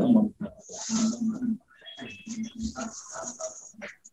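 A man's voice murmuring quietly and indistinctly in short broken snatches, with breathy hissing between them.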